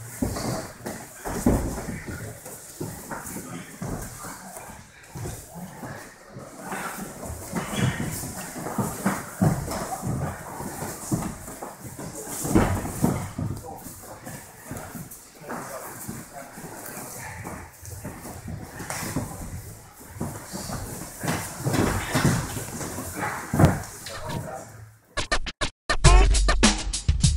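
Several pairs grappling against padded walls on training mats: irregular thuds and scuffs of bare feet and bodies, with indistinct voices in the room. Near the end the sound cuts off abruptly.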